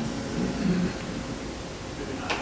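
Steady hiss of room tone with a faint low murmur a little under a second in.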